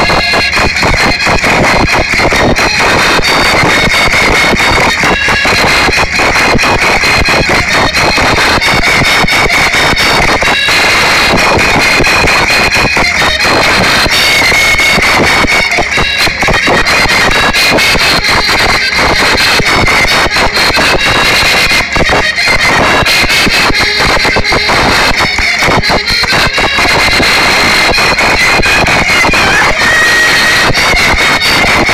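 Portuguese folk music played live and loud for a rancho folclórico dance: an accordion carrying the tune over a steady driving beat.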